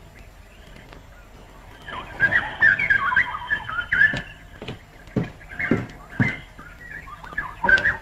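Film soundtrack hiss, then from about two seconds in, quick high-pitched chirping calls like birds, with a few sharp knocks among them.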